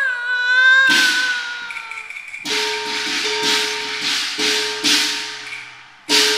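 Cantonese opera music: a singer holds a long note that sinks slightly in pitch and ends about two seconds in, with a crash about a second in. Then the percussion comes in with sharp strokes about twice a second over a sustained instrumental tone.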